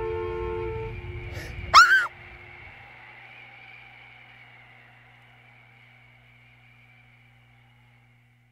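Slow sustained soundtrack music dies away about a second in. Just before two seconds comes a short, loud cry that rises and then falls in pitch, followed by a faint low hum and ringing that fade out.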